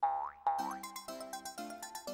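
Cartoon boing sound effects as the rabbit springs away: two springy pitch swoops about half a second apart, over light background music.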